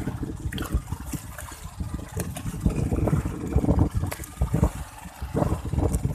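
Irregular splashing and thumps of water as a hooked yellowfin tuna is hauled up at the side of a boat.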